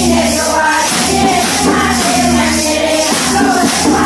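A group of women singing a Gujarati devotional bhajan together, keeping a steady beat with handheld clappers that click on each stroke.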